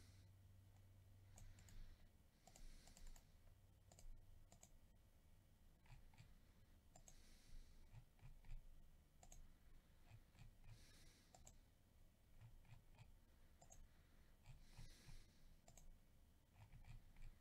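Near silence, with scattered faint computer-mouse clicks as the list randomizer is run.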